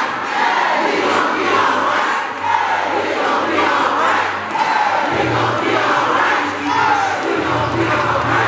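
A large crowd in a hall, many voices shouting and calling out together over one another, with a low steady drone underneath from about a second in that grows stronger near the end.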